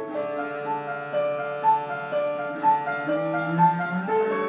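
Piano and cello playing together: a run of piano notes over a held low cello line that climbs near the end.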